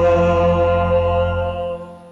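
Sung church music: a held final chord of voices over a sustained bass note, steady and then fading out near the end.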